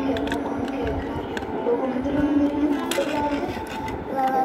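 Indistinct voices in the background, with a few light clicks of plastic dollhouse furniture being handled, the sharpest about one and a half and three seconds in.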